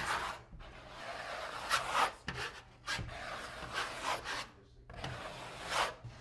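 A 1/8-inch V-notch steel trowel scraping water-based mastic adhesive across a drywall surface, in a series of uneven sweeping strokes with short pauses between them.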